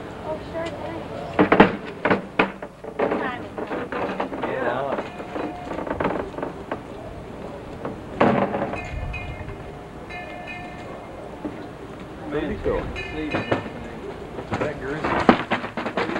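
Indistinct voices and street noise, with short knocks from handling the camcorder. A few brief high steady tones sound about halfway through and again a little later.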